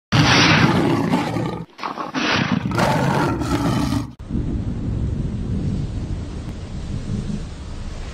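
Big-cat roar sound effect: two loud roars, the second longer, followed by a steady low rumble from about halfway through.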